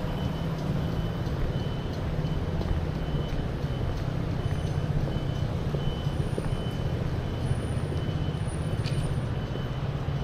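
City street traffic: a steady low rumble of vehicle engines, with a short high electronic beep repeating at a regular pace.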